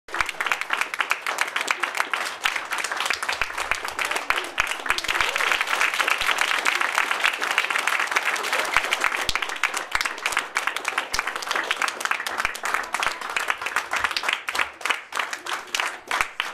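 Audience applauding: many people clapping together, thinning to fewer, separate claps over the last few seconds.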